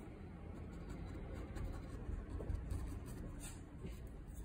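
Small paintbrush stroking and dabbing white paint onto a textured canvas: a soft scratchy rustle of the bristles, strongest about three and a half seconds in, over a low steady rumble.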